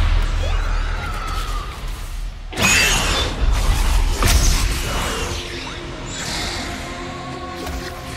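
Film score music with two sudden crashing impacts, about two and a half and four seconds in, settling into sustained held notes.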